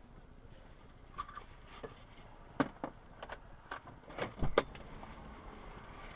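About a dozen small clicks and knocks scattered over a few seconds, the loudest about halfway through and near the end, over a faint steady high-pitched whine.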